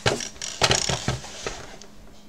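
Plastic pistol-grip RC transmitter handled and set down on a cutting mat: a handful of knocks and clatters in the first second and a half, the loudest about half a second in, over a faint steady hum.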